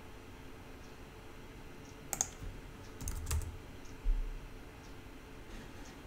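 A few scattered keystrokes on a computer keyboard, with short clicks about two and three seconds in and a duller knock about four seconds in.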